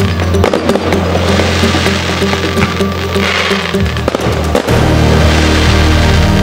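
Fireworks bursting and crackling over loud music with steady held bass notes. A hiss of crackling comes about three seconds in, and a sharp bang about four and a half seconds in.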